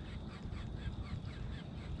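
Faint bird calls, a quick run of short chirps, over a steady low rumble.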